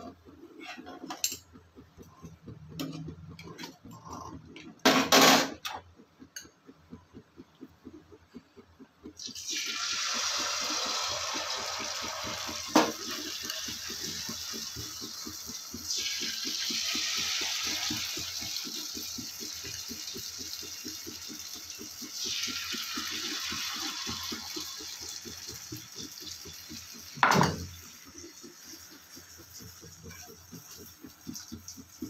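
Malpua batter ladled into hot oil in a frying pan, sizzling loudly; fresh ladlefuls go in about nine, sixteen and twenty-two seconds in, each starting a new burst of sizzle. Before the frying, a metal spoon clinks and clanks against the pan, and a sharp knock comes near the end.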